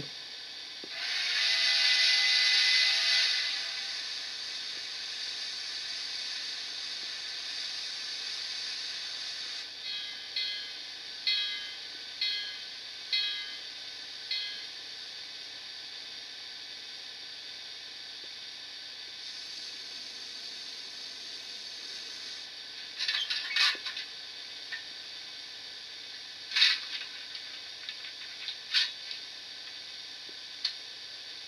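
Sound decoder in an N scale Kato Mikado's tender playing standing steam-locomotive sounds through its tiny speaker. A loud hiss carrying a few steady tones comes about a second in and lasts some three seconds. Then comes a steady hiss of the running generator, a run of about five even pulses a second apart, and a few sharp clicks near the end.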